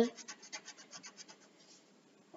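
Pencil scratching on paper in a quick run of short strokes, about seven a second, that fade out after about a second and a half.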